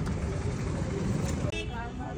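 A steady low rumble of outdoor background noise, with a person's voice starting about one and a half seconds in.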